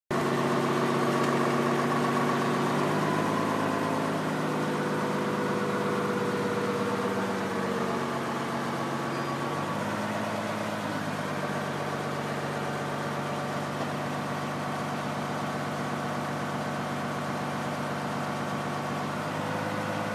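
TURBOPELLET pneumatic pellet-loading machine running steadily, its motor-driven blower making an even hum whose pitch shifts a little a few times.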